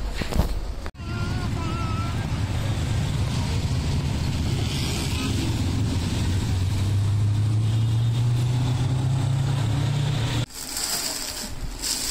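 Motor rickshaw engine running steadily with road noise, heard from inside the open cabin: a low, even hum whose pitch rises slightly near the end.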